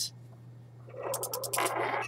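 Small spinning top, a metal disc on a spindle, quiet at first. From about a second in it clicks, rattles and scrapes against the tabletop as it slows, wobbles and tips over.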